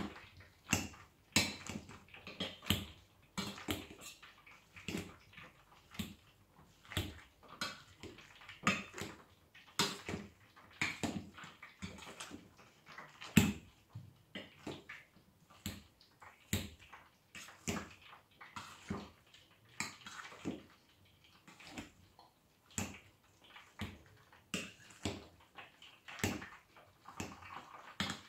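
Wire potato masher working boiled potatoes with butter and lard in a stainless steel pot: soft squashing with irregular metal clacks of the masher against the pot, about one or two a second.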